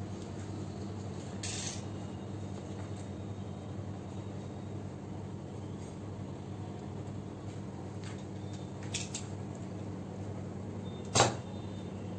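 Steady low electrical hum of room tone, with a brief hiss about a second and a half in, a couple of faint clicks later, and a short knock near the end that is the loudest sound.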